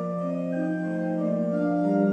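Church organ playing a slow hymn prelude in held chords, with a steady low note sustained beneath upper notes that move every half second or so.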